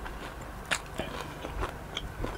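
Close-miked chewing of crispy lechon belly roll, the crackling pork skin giving a few short, sharp crunches, the loudest about three-quarters of a second in.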